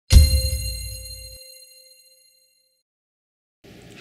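A single metallic clang sound effect with a deep low thud under it, its bright ringing tones dying away over about two and a half seconds.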